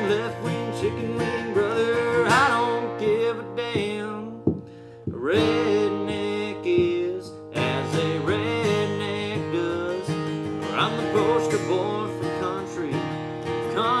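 Steel-string dreadnought acoustic guitar strummed in a country rhythm. The playing drops away briefly about four and a half seconds in, then picks up again.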